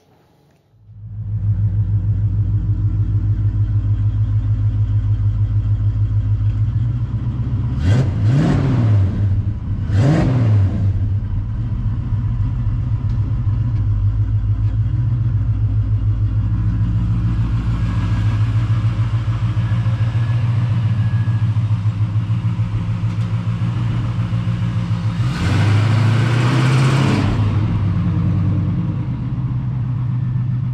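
Fuel-injected 355 small-block V8 of a 1969 Chevrolet Camaro running at a pulsing idle. It is blipped twice, about eight and ten seconds in, and revs up for a couple of seconds about twenty-five seconds in as the car moves off.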